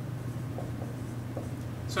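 Marker writing on a whiteboard: a few faint, short strokes over a steady low hum.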